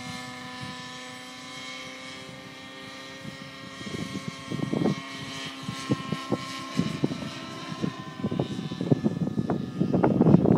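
Align T-Rex 700 radio-controlled helicopter flying high overhead: a steady whine from its rotor and drivetrain in several pitched tones, fading over the first few seconds as it moves away. From about four seconds in, irregular gusts of wind buffet the microphone and grow louder, covering the helicopter.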